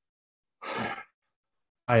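A man's sigh: one breathy exhale about half a second long, shortly before he starts to speak.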